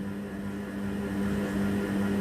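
A steady low hum with faint room noise.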